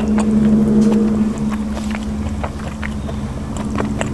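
A steady low mechanical hum, like a motor running, throughout. A few faint soft clicks of fingers handling food sit on top of it.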